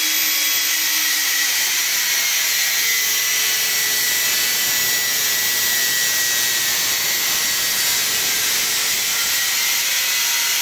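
Angle grinder with a cut-off disc cutting through a stainless steel tube: a loud, steady, high grinding hiss that does not let up.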